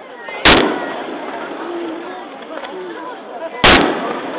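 Aerial firework shells bursting, two sharp loud bangs about three seconds apart, each followed by a short echo.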